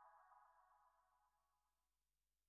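The faint final held tone of a J-pop song fading away, gone shortly before the end.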